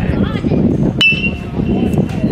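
Metal baseball bat hitting a pitched ball about a second in: one sharp crack followed by a high ringing ping that fades over most of a second.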